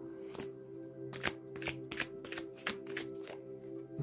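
A tarot deck being shuffled by hand: a dozen or so quick, soft card strokes, most of them coming after the first second, over calm background music with long held tones.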